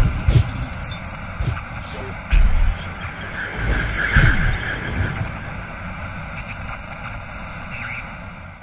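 Channel logo intro sting: sound effects of sharp clicks and short high gliding chirps, with low thuds and a heavier boom a little over two seconds in, swelling about four seconds in and then settling into a steady hiss that slowly fades.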